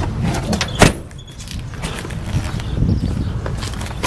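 Rustling and bumps of someone getting out of a pickup truck's cab, with one sharp knock about a second in, over a steady low rumble.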